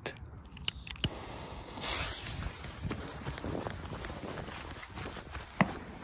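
A firework rocket's fuse hissing after being lit, starting about two seconds in and running on with scattered small crackles and clicks, with one sharper pop near the end.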